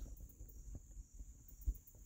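Crickets trilling steadily in a high, continuous tone, with a soft low bump shortly before the end.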